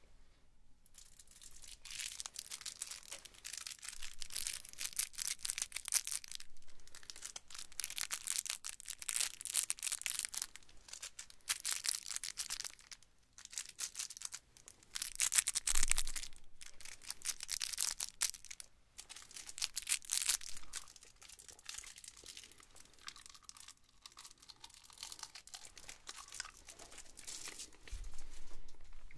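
Cellophane wrapper of a peppermint candy being crinkled and torn open by hand, a crackly rustling that comes in irregular bursts, loudest about halfway through.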